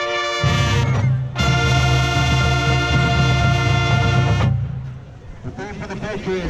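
Marching band brass playing loud full chords: a couple of short chords, then a long held chord that the whole band cuts off together about four and a half seconds in, the sound of the show's ending.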